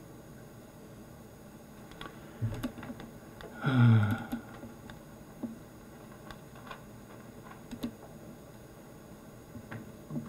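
A few scattered, isolated clicks from a computer mouse and keyboard being worked, over a low steady background. About four seconds in comes a short voiced sound from a person, louder than the clicks.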